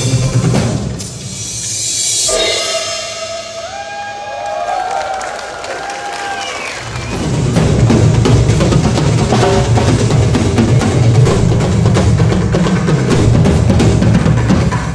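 Drum kit played live over backing music. After a few hits at the start, the drums drop away into a quieter passage of gliding pitched tones, then about seven seconds in the full kit comes back with dense bass drum and snare.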